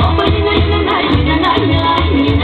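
Bulgarian folk dance music with a steady, even bass beat under a melody line.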